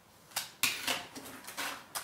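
A click, then about a second and a half of uneven plastic clattering and rattling as a 3D-printed folding equal space divider is handled and its hinged plastic arms move against each other.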